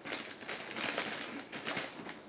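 Soft, irregular rustling and scraping of hands turning a piece of crochet and handling the cotton yarn close to the microphone, with a few denser bursts about a second in and near the end.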